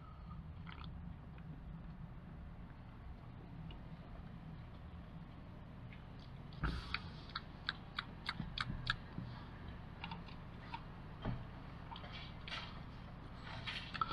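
Faint mouth sounds of someone tasting a fizzy drink: a run of small lip smacks and tongue clicks about halfway through, and a few more later, over a low steady hum.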